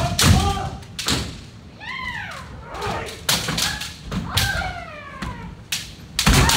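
Kendo sparring by several pairs at once: sharp impacts of bamboo shinai on armor and stamping feet on the wooden floor, mixed with long kiai shouts that slide up and down in pitch.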